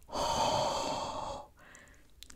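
A woman's long, breathy exhale of laughter, lasting about a second and a half.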